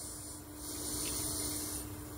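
A pause between spoken sentences: a faint hiss swells for about a second over a steady low hum.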